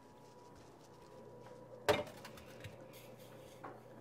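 Quiet kitchen handling sounds: one sharp knock about two seconds in, like a bottle or dish set down on the counter by the sink, with a few light clicks over faint room tone.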